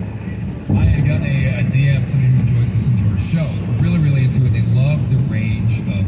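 A person's voice from the car's audio system over steady low road noise inside the cabin while driving on a rain-soaked freeway.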